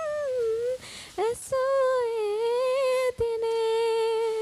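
A woman singing unaccompanied in long, drawn-out notes, with a breath about a second in and a steady held note near the end.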